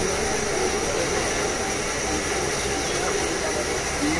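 Steady background hum and hiss of a busy room, with faint, indistinct voices in it.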